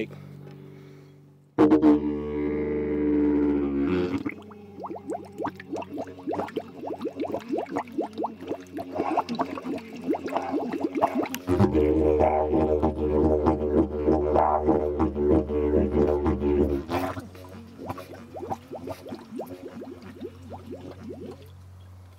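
Didgeridoo drone played with its bell end submerged in water, so the air bubbles out through the water. A steady low drone runs throughout with a rapid, irregular bubbling crackle over it. The drone swells much louder about two seconds in and again for several seconds around the middle.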